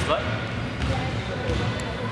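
Repeated low thuds of trampolines being bounced on in a large gym hall, with a brief spoken word near the start.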